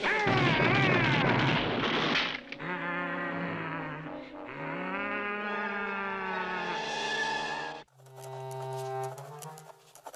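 Cartoon sound effects and score: a dense zip-away effect with repeated falling whistle-like slides for the first two seconds, then brass-led music with sliding notes. Near the end it cuts off and gives way to a steady low held note.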